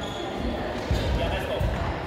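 Bare feet thudding on a wooden sports-hall floor as children step and stamp into stances during a karate kata, two heavier thuds about a second apart, over people talking in the hall.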